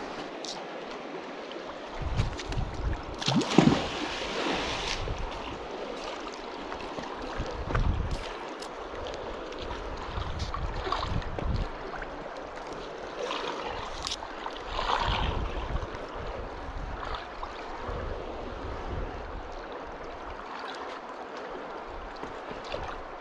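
River water flowing and lapping against a rocky bank, with wind buffeting the microphone in low rumbling gusts. A few short louder rustles and knocks break in, loudest a few seconds in and again about two-thirds of the way through.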